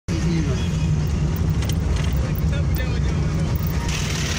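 Steady rumble of a moving vehicle, with road and wind noise, heard from inside the vehicle.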